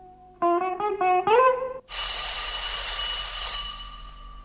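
A short phrase of plucked guitar notes, then a telephone bell rings loudly for about a second and a half and stops.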